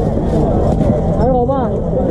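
Speech: a raised voice calling out over the chatter of a dense crowd.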